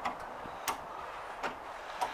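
Faint footsteps on snow, about three soft steps roughly one every 0.7 seconds, over a low background hiss.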